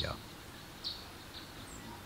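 Recorded forest ambience playing back: a few short bird chirps over a steady background hiss.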